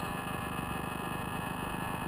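Tow plane's light aircraft engine running steadily at a distance, a low even hum with no change in the two seconds.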